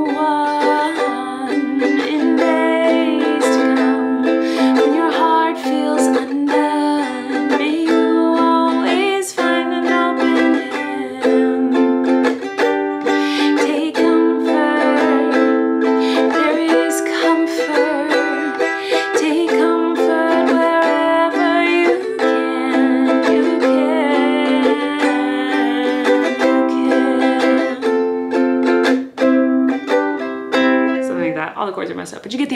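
Ukulele strummed in chords, accompanying a woman singing.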